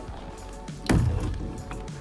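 One leaf of a greenhouse double door, a powder-coated steel tube frame glazed with polycarbonate, shut against its frame about a second in: a single sharp knock with a short low boom after it. Background music plays throughout.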